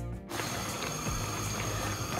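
Cherries and water boiling in a large enamel pot: a dense, steady run of small bubbling pops. The cherries have cooked for about an hour and a half and are soft, giving up their juice.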